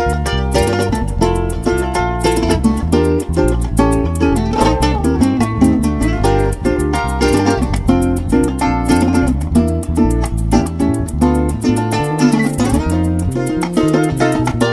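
Instrumental joropo ensemble: a cuatro llanero strummed in a fast, driving rhythm over electric bass and shaken maracas.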